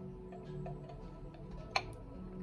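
Soft background music, with one sharp porcelain click near the end as an upturned teacup is set down on its saucer.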